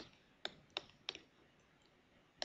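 A quick run of about five faint computer mouse clicks in a little over a second, as buttons are clicked on an on-screen calculator to enter a sum.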